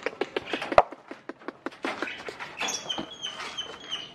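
Lovebirds chirping: sharp clicks and chips at first, then from about two and a half seconds a quick run of short, high chirps, about five a second.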